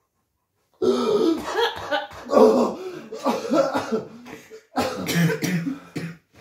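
A person coughing and clearing their throat in a series of loud bursts, starting about a second in after a brief silence.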